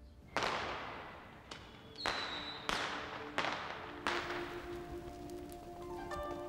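Five sharp crashing hits, each trailing off in a hiss, spaced unevenly over about four seconds, with the first the loudest. A brief high whistling tone sits between the second and third. Sustained music notes come in partway through and hold to the end.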